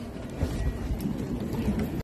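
A seated crowd of spectators getting to its feet: shuffling, rustling and faint murmuring, with a low rumble from about half a second in.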